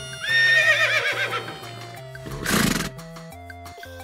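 A horse whinny, a high wavering call that falls in pitch, over background music with a steady bass line. About two and a half seconds in comes a short, noisy burst about half a second long.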